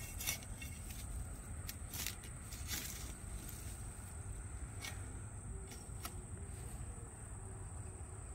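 Crickets chirping in a steady, high-pitched continuous trill, with a few faint rustles and clicks of a hand working loose soil and dry twigs.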